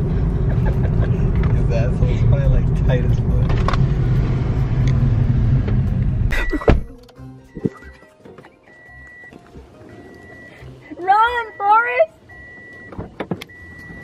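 Low steady rumble of a car heard inside the cabin, cutting off abruptly with a sharp clunk about halfway through as the car is shut off. After that a car's warning chime beeps on and off at one steady high pitch, and a voice gives two short sliding cries near the end.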